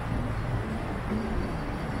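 City street ambience at a busy intersection: a steady low rumble of road traffic.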